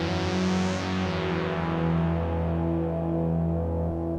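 Stylophone Gen X-1 analogue synth playing a monophonic pad, a slow line of held low notes that glide from one pitch to the next. The notes run through a stereo plate reverb with its pre-delay set a little longer, so the reverb tail comes in just after each note.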